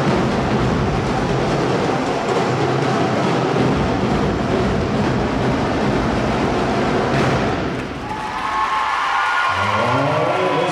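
Drum corps drumming, a dense, loud wash of drums that drops off about eight seconds in.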